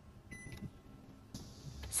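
A short electronic beep from a steam oven's control panel, then a faint steady hiss that starts a little past halfway.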